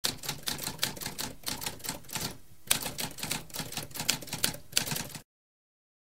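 Typewriter keys typing in a quick run of clacks, about four or five strikes a second, with a brief pause near the middle; the typing cuts off suddenly about five seconds in.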